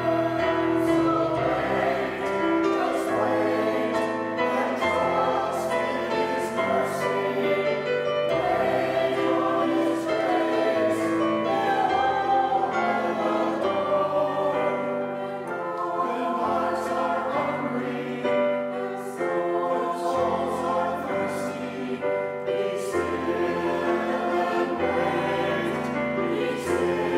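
Small mixed church choir of men and women singing an anthem in several parts at once, with long held notes.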